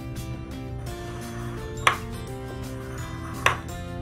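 A coin scraping the latex coating off a paper scratch-off lottery ticket, with two sharp clicks about two and three and a half seconds in, over background music.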